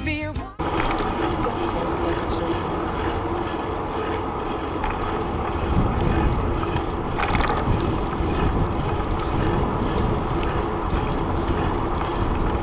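Wind rushing over a handlebar-mounted camera's microphone together with bicycle tyres rolling on pavement: a steady rumbling noise, with a few brief bumps around the middle.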